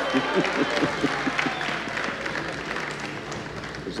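Live studio audience clapping and cheering, with voices mixed into the crowd noise. It swells just before and eases slightly near the end.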